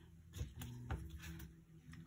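Quiet room tone with a low steady hum and two faint soft clicks, about half a second and a second in.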